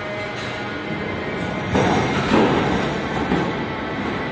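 Budapest Millennium Underground railcar at the platform, humming steadily. A little under two seconds in, a louder rumble starts as the train begins to move off.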